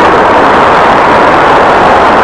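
Loud, steady rush of road traffic.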